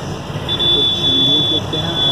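A man's voice speaking over steady background noise, with a thin, steady high-pitched tone starting about half a second in and breaking up near the end.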